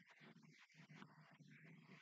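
Near silence, with only a faint, indistinct sound too low to make out.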